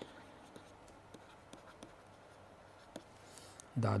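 Faint scratching and light ticks of a stylus writing on a tablet, as a word is hand-written. A man's voice starts speaking near the end.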